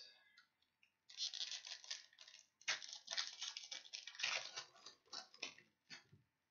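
Foil wrapper of a 2020 Bowman baseball card pack crinkling and tearing as gloved hands open it. It comes as three runs of dense crackling, starting about a second in.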